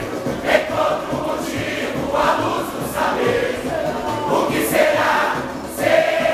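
A large mixed choir of men and women singing a samba-enredo together over music.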